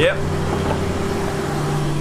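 A car engine idling with a steady low hum.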